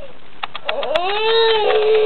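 A baby's long, drawn-out vocal sound, gliding up at the start and then held at a fairly steady high pitch, beginning under a second in. It is preceded by a few light taps.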